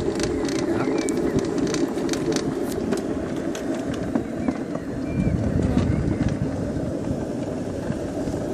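Summer toboggan sled rolling and rattling in its metal trough as the tow lift hauls it uphill: a steady rumble with scattered sharp clicks. The rumble grows louder about five seconds in.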